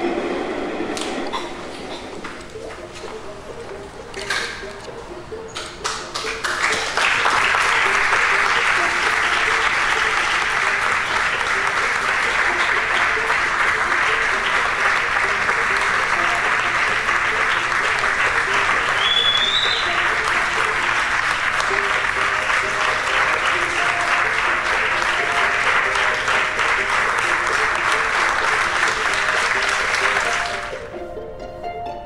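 Audience applause, beginning with a few scattered claps about four seconds in, then swelling at about six seconds into full, steady clapping that lasts to the end.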